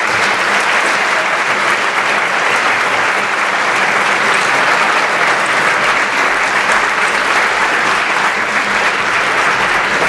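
Audience applauding steadily, a dense even clapping that holds at one level throughout.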